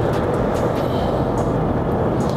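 Steady road and engine noise inside a moving car's cabin, a low, even rumble with no sudden sounds.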